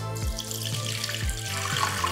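Juice poured in a steady stream from a glass measuring cup into a plastic blender jar, splashing onto the bottom, over background music with a steady beat.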